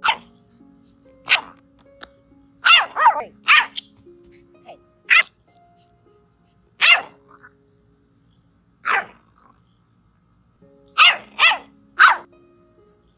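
Bulldog puppy barking in short, high yaps, about ten of them spaced irregularly, some coming in quick pairs, over soft background music.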